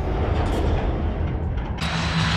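Logo intro sting: a low, rumbling music sound effect. Near the end it cuts to the even noise of an arena crowd from a basketball game broadcast.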